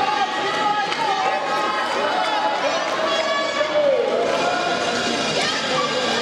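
Spectators at an ice rink talking and calling out over each other, a steady din of many overlapping voices.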